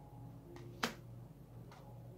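Oracle card laid down onto a pile of cards: one sharp snap just under a second in, with fainter taps before and after it.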